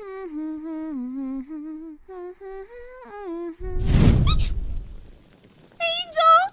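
A female cartoon voice humming a gentle tune in held notes that step up and down. About three and a half seconds in, a sudden loud whoosh of flames bursting up cuts off the humming and fades over about a second.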